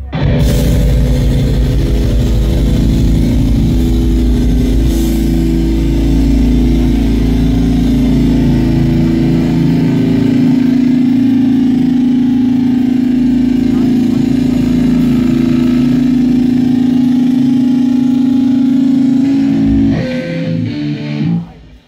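A live metal band's distorted electric guitars and bass holding one sustained low chord as a loud, steady drone, which stops suddenly at the end.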